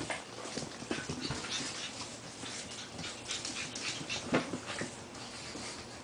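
Pug puppies playing in and around a fabric dog bed: short, scattered dog sounds among rustling and scuffling, with the loudest about four and a half seconds in.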